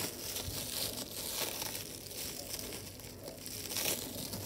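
Rabbit chewing a piece of frozen banana right at the microphone: a continuous crackly crunching.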